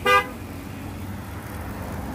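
A short car horn toot right at the start, then a steady low rumble with a faint hum.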